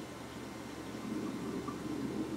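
Steady background room noise: an even hiss with a faint low hum and no distinct sound event.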